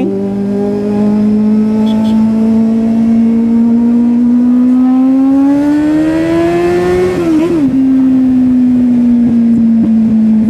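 Kawasaki Z800's inline-four engine pulling steadily up through the revs for about seven seconds, then dropping in pitch at a gear change and carrying on at a slightly falling, even note.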